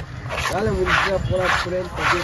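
A knife blade scraped again and again across a wooden chopping block, about two strokes a second, with voices talking underneath.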